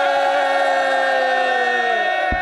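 The men's chorus lines of a muhawara poetry duel chanting together, holding one long drawn-out note whose pitch sags slightly as it is held.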